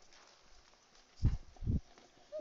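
Two dull, low thumps a little under half a second apart, a little over a second in.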